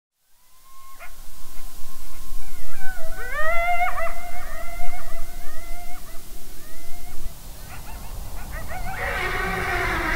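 Several overlapping animal howls, each gliding up and down in pitch, dying away about seven seconds in. A rushing noise rises near the end.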